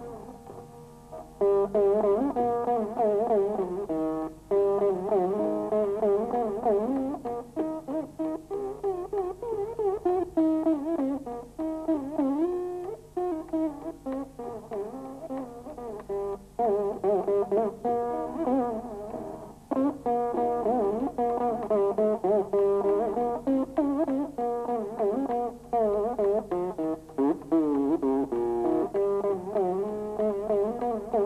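Solo Saraswati veena playing a varnam in raga Begada: plucked notes with continual sliding pitch bends (gamakas) and quick runs. It starts softly, then the playing is full from about a second and a half in.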